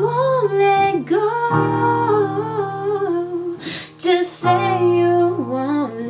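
Pop song: a female voice singing held, gliding notes over sustained keyboard chords.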